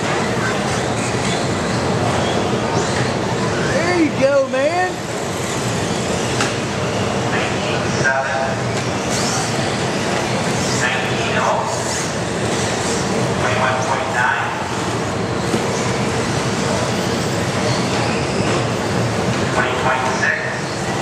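Radio-controlled off-road race cars running laps on an indoor dirt track: a steady mixed din of small motors and tyres echoing in a large hall, with voices talking over it.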